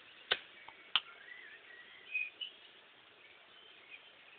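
Faint bird calls: short thin whistles through the first half. Two sharp clicks come about a third of a second and about a second in.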